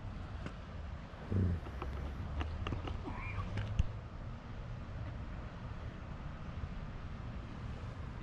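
Outdoor ambience dominated by a steady low rumble of distant road traffic, with a few faint clicks and a short low sound about a second and a half in.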